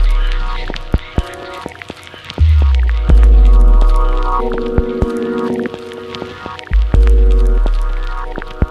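Ambient IDM electronica: loud deep bass notes that swell and slowly fade, coming in about two and a half seconds in and again near seven seconds, under sustained synth chords and sparse sharp clicks.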